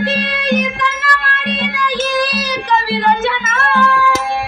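A woman singing a Kannada devotional song into a microphone, her voice gliding between notes, over harmonium accompaniment and a steady beat of about two strokes a second.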